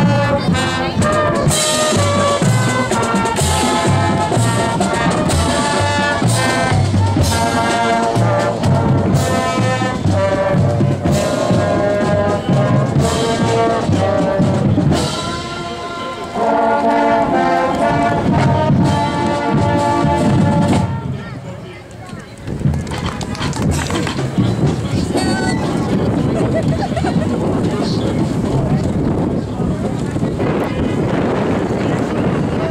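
Marching band playing: brass, including trumpets, trombones and sousaphones, over marching drums. The music stops about 21 seconds in, leaving a steady noisy background.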